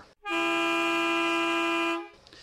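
A single vehicle-horn blast at one steady pitch, held for about a second and a half and then cut off.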